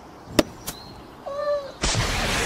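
Two sharp clicks, then a domestic cat giving one short meow about halfway through. Just before the end a sudden loud burst of noise cuts in.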